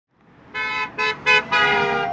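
A pickup truck's horn honking four times: three short toots, then a longer blast near the end. They are honks of support answering a roadside 'honk' campaign sign.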